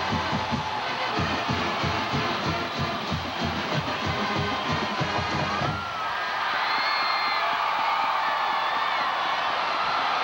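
Stadium band music over a cheering crowd: a steady drumbeat for about the first six seconds, then it stops, leaving held notes and crowd noise.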